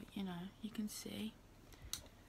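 A young woman's voice speaking quietly for about the first second, then a pause with a single short click near the end.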